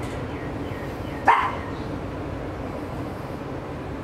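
A Shih Tzu gives one short yelp about a second in as its painful, inflamed anal sac area is squeezed.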